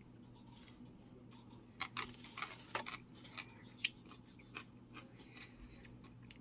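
Faint, irregular clicks and crackles of nacho tortilla chips being eaten and handled at a table, busiest about two to three seconds in, with one sharper click near four seconds.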